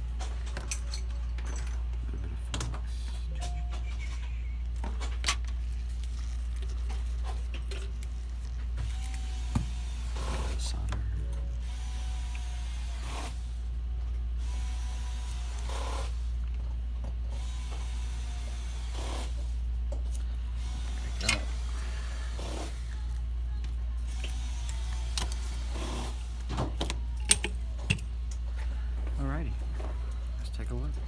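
Steady low hum with scattered sharp clicks and taps of a soldering iron and metal tools against a circuit board while a resistor is soldered onto it. The loudest click comes near the end.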